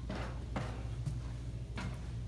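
Footsteps climbing the entry steps into a fifth-wheel trailer: a few soft knocks over a steady low hum.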